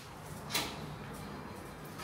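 Passenger lift's automatic sliding doors opening, with a short click about half a second in over a faint steady hum.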